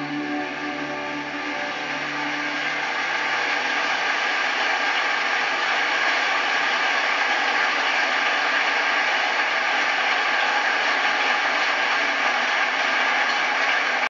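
Live concert audience applauding as the song's last notes die away; the applause swells over the first few seconds, then holds steady.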